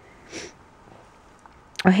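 One short sniff through the nose, about half a second in.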